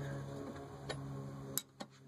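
A few sharp metal clicks from a 17 mm wrench on the fuel filter's top fitting as it is worked loose, the loudest a little past halfway. A steady low hum runs underneath.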